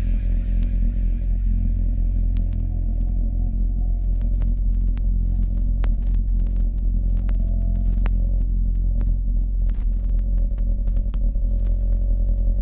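Turntable acoustic feedback: a loud, steady, deep hum from the record deck picking up the club's sound system, with scattered sharp clicks over it. The DJ is letting the feedback hum run on purpose.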